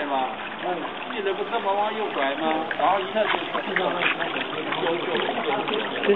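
Water trickling from a small garden fountain into a shallow leaf-shaped basin, under people's voices talking.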